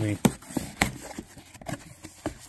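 Flaps of a cardboard box being pulled open by hand: two sharp cardboard snaps or scrapes in the first second, then a few small crackles.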